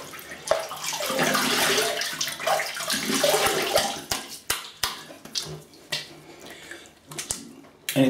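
Water running and splashing in a bathroom sink during a quick rinse mid-shave. It is loudest for the first few seconds, then trails off into scattered splashes and a few sharp clicks.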